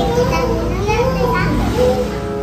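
A young child's voice making a long, wavering sound without clear words, amid the sounds of children playing.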